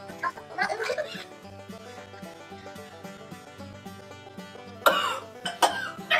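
A woman coughing over background music, with two hard coughs near the end. Ground cinnamon held in the mouth is setting off a dry coughing fit.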